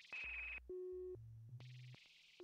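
Glitch electronic music on synthesizers: a run of steady synthesized tones that jump abruptly from one pitch to the next, first a high tone over hiss, then a mid tone, then low hums, with faint clicks between them.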